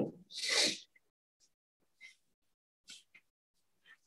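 A man's short, breathy laugh about half a second in, followed by quiet broken only by a couple of faint ticks.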